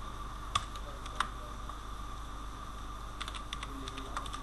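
Computer keyboard being typed on: a single keystroke about half a second in and another about a second in, then a quick run of keystrokes near the end, over a steady faint background hum.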